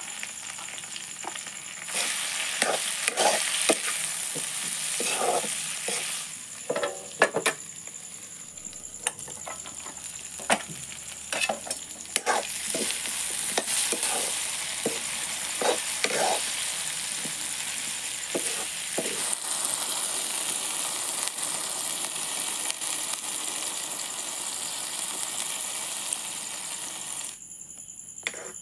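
Food sizzling as it fries in a black iron kadai, with a spatula scraping and knocking against the pan as it is stirred. The sizzle cuts off suddenly near the end.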